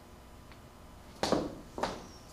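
Two footsteps about half a second apart, a person walking away over a room's floor, against a quiet room background.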